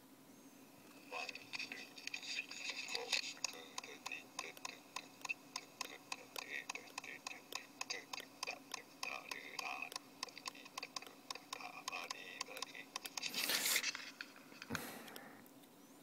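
Faint recording of a voice singing with rhythmic tapping, about three taps a second, running from about a second in to near the end. A breathy noise burst follows near the end.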